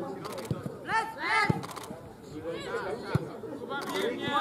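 Several high-pitched young voices shouting and calling over one another, the loudest shouts about a second in, with a few short sharp knocks.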